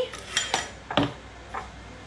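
A spoon clinking against a container several times in short separate knocks while honey is spooned out.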